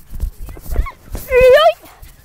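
A person's short shout that rises slightly in pitch, about one and a half seconds in, with low thumps from the bouncing chest-mounted camera before it.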